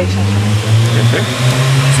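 A motor vehicle's engine running close by: a loud, steady low hum that steps up in pitch about one and a half seconds in.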